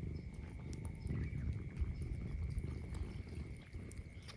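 A cat licking and lapping water off its wet paw, soft irregular wet sounds over a low rumble.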